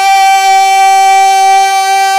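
A male naat reciter holding one long, steady high sung note, a single voice with no instruments heard.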